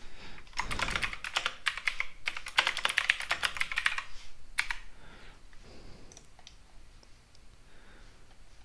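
Typing on a computer keyboard: a quick run of keystrokes for about four seconds, then a few scattered clicks.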